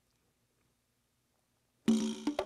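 Near silence, then close to the end a Lowrey Legend Supreme electronic organ suddenly begins playing a held chord.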